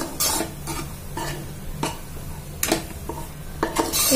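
A spoon scraping and knocking against a pressure cooker pan as thick masala with roasted gram flour is stirred and fried in oil over a low flame, with a faint sizzle underneath. The scrapes come irregularly, about five in the few seconds.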